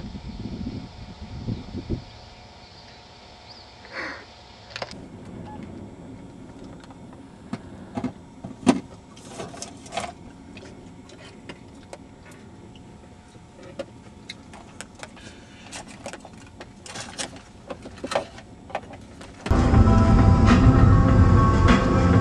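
Road noise inside a moving car: a low, steady hum scattered with sharp clicks and knocks. About a second and a half before the end, much louder music starts suddenly.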